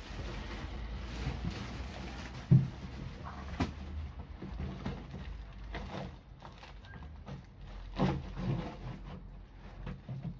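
Handling noise from a length of 100 mm insulated flexible ducting being lifted and pushed into a round hole in an OSB box: rustling and bumping, with a sharp knock about two and a half seconds in, another about a second later, and a couple of duller thumps near the end.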